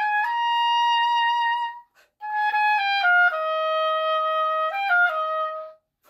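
Oboe playing a short legato phrase: two held notes, a brief break about two seconds in that serves as a tiny breathing spot, then a phrase of notes stepping downward with one long held low note near the middle.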